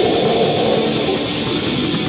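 Raw, lo-fi folk black metal demo recording: distorted electric guitars strummed in a dense, unbroken wall of sound, shifting to a new chord right at the start.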